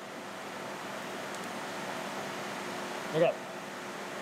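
Steady machine-shop background noise, an even hiss with a faint hum, swelling slightly over the first two seconds and then holding steady.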